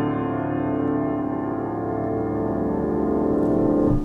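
Acoustic piano's closing chord held with the sustain pedal, its notes ringing on together at a steady level. Right at the end the keys and pedal are released and the sound is cut off by the dampers, leaving a short fading tail.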